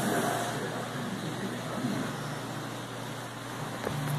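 Steady background noise: an even hiss with a low, constant hum underneath and no distinct events.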